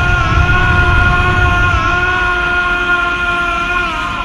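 A man's long, held battle scream from an anime character powering up, sustained at one steady pitch over a deep rumble, and breaking off near the end.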